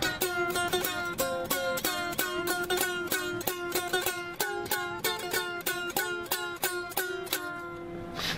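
Homemade gourd tars, gourd-bodied stringed instruments, played with quick plucked notes about four a second over one steady held drone note, giving a dulcimer-like mountain sound.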